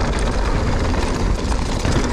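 Ibis Ripmo mountain bike rolling down a dirt trail: a steady low rumble of wind buffeting the camera microphone, mixed with tyre noise on the dirt and small rattles from the bike.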